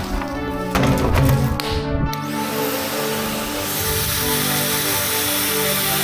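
Wet-and-dry vacuum cleaner switched on about two seconds in and running steadily, sucking floodwater out of a car's floor pan, under background music.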